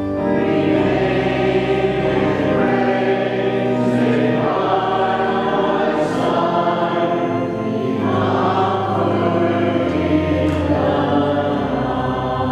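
Congregation singing a hymn together over a steady low accompaniment, in long sustained phrases that change about every four seconds.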